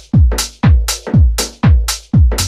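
Instrumental passage of a UK house track: a four-on-the-floor kick drum, about two beats a second, each with a falling punch, over a sustained deep bass and held synth notes, with crisp high percussion on top.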